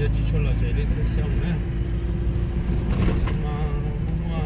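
Car driving along a paved road, heard from inside the cabin: a steady low engine and road rumble, with voices talking at times over it.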